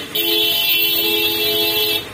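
A vehicle horn sounding one long, steady blast that stops near the end.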